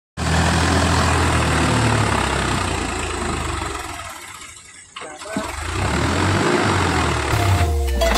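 Tractor engine running under load as the tractor churns through a water-filled channel, with a dense rush of splashing water over it. The sound fades away about four seconds in, then the engine comes back with its pitch rising. Music starts near the end.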